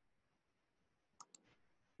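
Two quick computer mouse clicks, a split second apart, about a second in, against near silence.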